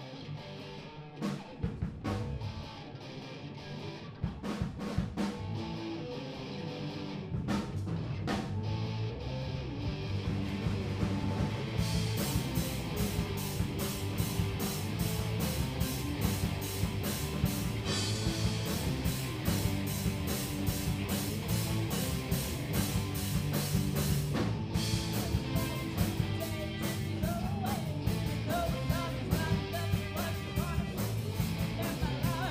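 Live rock band playing: electric guitars and bass with a drum kit. It opens with sparse guitar and drum hits, and the full band comes in with steady cymbal beats about twelve seconds in. A singing voice is heard near the end.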